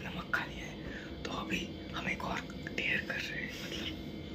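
A person whispering, with a faint steady hum underneath.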